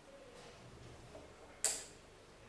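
A paper cup set down on a table: one sharp tap about one and a half seconds in, against faint room sound.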